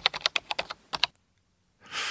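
Computer keyboard typing: a quick run of keystrokes over about the first second, a sound effect of a shop clerk looking up an order. A short soft hiss follows near the end.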